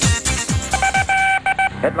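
Electronic music with falling bass-drum hits stops about half a second in and gives way to an electronic beep tone, a single steady pitch broken into a few short pulses, lasting about a second. A man's voice starts just at the end.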